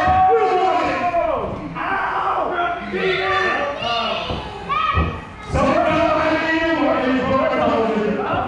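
Several excited voices shouting over one another, with a heavy thud about five seconds in and a lesser one at the very start.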